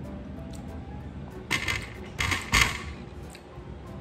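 Fast-food paper wrappers and takeout containers being handled: two short bursts of rustling and clatter around the middle.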